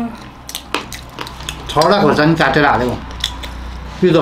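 Metal spoons clinking and scraping against plates while scooping chatpate, a scatter of short sharp clicks. A person's voice sounds for about a second in the middle.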